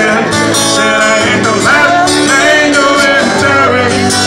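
Live country-rock music: two guitars strummed while a man sings the lead vocal.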